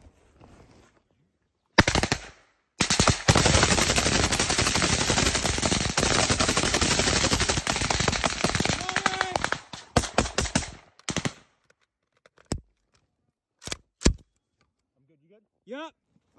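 A short burst of automatic gunfire about two seconds in, then heavy, continuous automatic rifle fire for about seven seconds. It breaks up into scattered single shots near the end.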